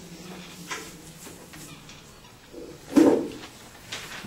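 Classroom room noise: a faint steady hum with scattered small clicks and rustles, and one short, much louder sound about three seconds in.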